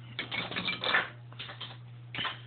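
Lumps of remelted zinc from zinc pennies clinking and scraping against each other and the wooden table as a hand picks them up: a quick clatter of metallic clicks in the first second, then a few lighter ticks. A steady low hum runs underneath.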